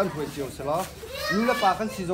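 Speech: a man talking, with children's voices in the background.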